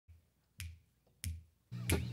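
Three crisp finger snaps about two-thirds of a second apart, keeping a steady beat. An electric guitar chord comes in under the last snap near the end.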